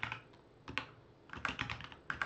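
Typing on a computer keyboard: the tail of a quick run of keystrokes at the start, a single key about three-quarters of a second in, then another quick run of keystrokes in the second half.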